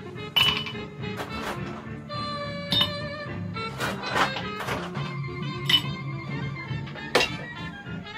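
Ice cubes dropped one at a time from tongs into a glass tumbler, a series of sharp clinks and knocks, over steady background music.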